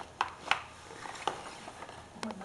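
Glossy blue gift bag rustling and crinkling as a baby grabs and pulls at it, with a few sharp crackles in the first second and a half.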